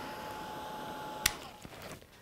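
Craft heat gun running with a steady fan whir and a thin whine, switched off with a click a little over a second in, then winding down, used to melt embossing powder.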